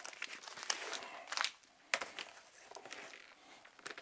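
Album sleeves and cardboard rustling and crinkling as records are slid out from a packed shelf, with a few sharp clicks and knocks, the sharpest about two seconds in, then quieter handling.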